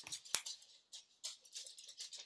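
A few faint, sharp clicks over quiet room tone, the clearest about a third of a second in.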